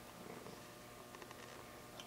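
Near silence: faint room tone with a few soft ticks about a second in.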